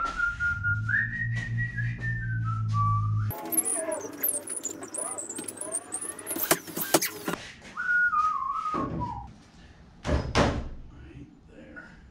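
A man whistling a short tune of held, stepping notes, then squeaks and sharp knocks as a wooden stud wall is pushed and shifted into place. Another short falling whistled phrase follows, and a single loud thunk comes near the end.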